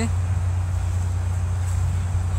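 A steady low rumble of outdoor background noise with a faint hiss above it, unchanging throughout.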